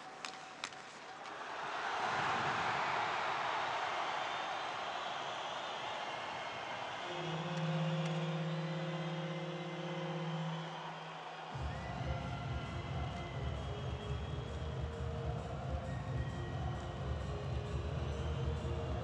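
Ice hockey arena after a home goal: a couple of sharp stick-on-puck clicks, then the crowd roar swells. About seven seconds in a steady arena goal horn sounds for about three seconds, and near the halfway point arena music with a low, even, pulsing beat starts and runs on.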